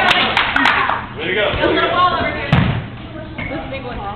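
Players' voices calling out during a dodgeball game, with a few light taps in the first second and one heavy rubber ball thud about two and a half seconds in.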